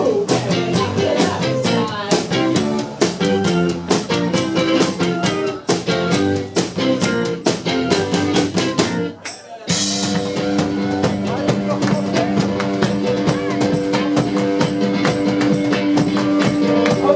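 Live band playing 1960s-style freakbeat/garage rock on electric guitar and drum kit, with a steady beat of drum strokes. About nine seconds in the music briefly drops out, then the band comes back in with long held chords over the beat.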